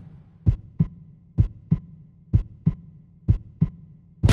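A heartbeat sound effect: four double thumps, about one pair a second, over a faint steady hum.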